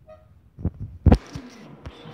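Handling noise from the recording phone: a short faint tone at the start, then two dull knocks, the second and louder just past a second in, a weaker knock near the end, and a muffled rubbing rustle in between, as the phone is moved and its lens covered.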